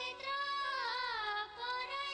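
A woman's high voice singing a Nepali folk song over steady, sustained instrumental accompaniment, with a wavering, bending held note about a second in.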